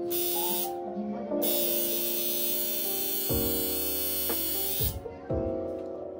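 Background music with soft keyboard notes, with a tattoo machine buzzing over it: briefly at the start, then again from about a second in until near the end.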